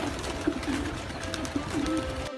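Racing pigeons cooing in low, repeated rolling calls, with a few sharp wing claps as birds flutter around the loft.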